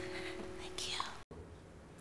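Last acoustic guitar chord ringing out and fading, with a brief breathy whisper just before it stops. The sound cuts off abruptly about a second in, leaving near silence.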